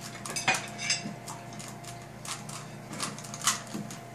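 3×3 plastic Rubik's Cube being turned by hand: its layers give short, irregular clicks, about eight over a few seconds.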